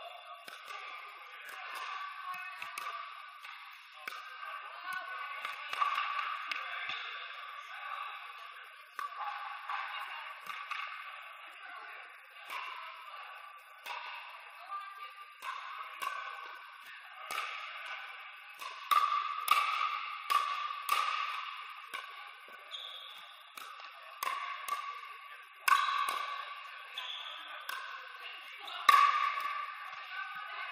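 Pickleball rally: sharp pops of hard paddles striking a plastic outdoor pickleball, coming irregularly about once a second, echoing in a large indoor hall.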